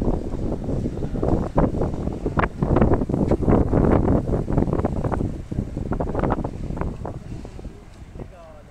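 Wind buffeting a phone's microphone in rough gusts, loudest in the middle and easing off near the end.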